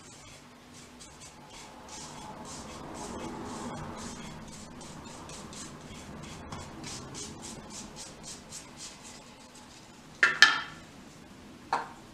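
A flat stirrer stirring thick water-based satin paint in a tin, a rhythmic scraping and swishing as it works round the bottom and sides. About ten seconds in comes a sharp knock, then a smaller one near the end, as the stirrer and tin are handled.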